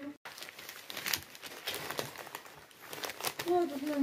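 Newspaper crumpling and rustling as it is handled, a long run of small crackles.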